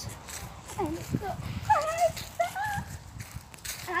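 A girl's voice making short, mostly wordless exclamations, over the low rumble and knocks of a handheld phone camera being jostled while its holder moves about.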